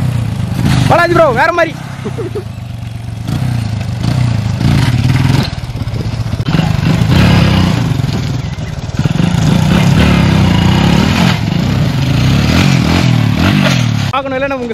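Small motorcycle engines revving and idling, the engine note swelling and falling several times, with a brief voice about a second in.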